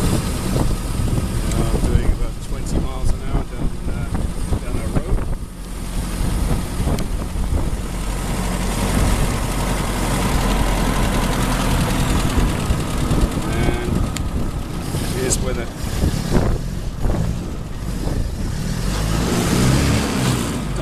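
1924 Bullnose Morris Cowley's four-cylinder side-valve engine and drivetrain running steadily under way in top gear, heard from inside the open-topped car. The engine sound dips briefly about five seconds in.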